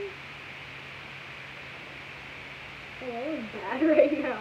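Quiet room tone with a faint steady hum, then about three seconds in a girl's voice rises in a wordless, sing-song 'ooh'-like exclamation with wavering pitch.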